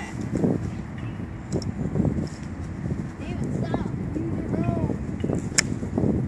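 Golf iron striking a ball off grass turf: a single sharp click about five and a half seconds in.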